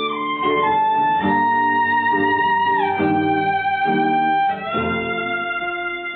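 Violin and nylon-string classical guitar playing a slow hymn tune together: the bowed violin holds long notes in a melody that steps downward, over guitar chords struck every second or two.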